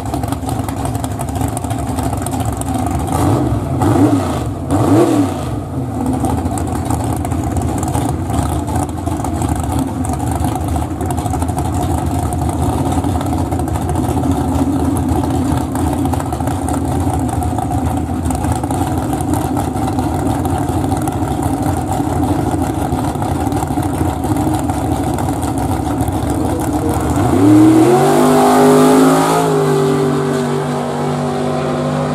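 Drag-race car engines idling loudly at the starting line, with two quick revs a few seconds in. Near the end the cars launch, and the engine pitch climbs sharply as they pull away under full throttle.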